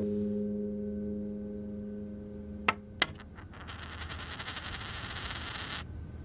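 A held music chord fades out. Then come two sharp clicks with a high ring, and a fast, ringing rattle about two seconds long that cuts off suddenly.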